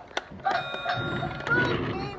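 A voice making a held, wordless sound, with one sharp click just after the start.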